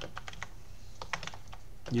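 Typing on a computer keyboard: an irregular run of quick key clicks. Speech begins right at the end.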